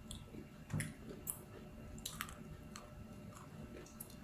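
Quiet chewing of a soft bread bun, with a few faint mouth clicks.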